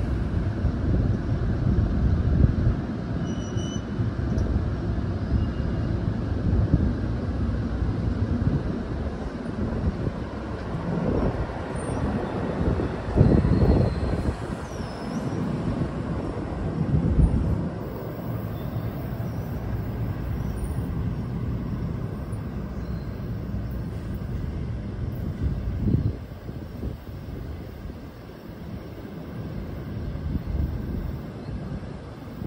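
NJ Transit multilevel commuter train pulling out of the station, a steady low rumble of wheels on rail with a few louder swells, fading away near the end as the trailing cab car draws off down the track.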